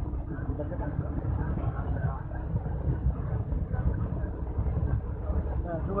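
A moving road vehicle: steady low engine and road rumble while driving.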